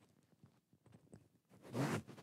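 Faint small rustles, then louder rustling near the end as a lapel microphone is handled at the speaker's collar.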